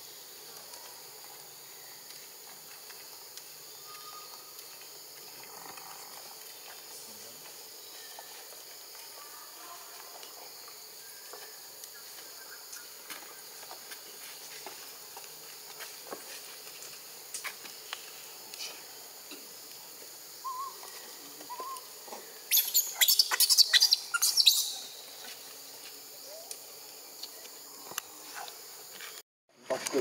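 Steady high-pitched drone of forest insects, with a few faint short calls. About three-quarters of the way through, a loud burst of rapid crackling and rustling lasts two to three seconds.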